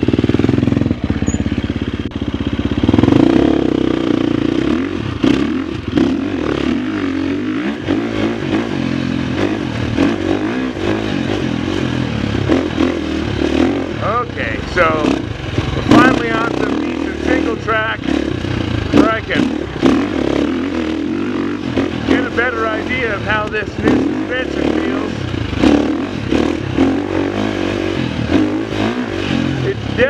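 The single-cylinder four-stroke engine of a 2023 Husqvarna FX350 dirt bike running under way, its revs rising and falling repeatedly as it is ridden along a trail.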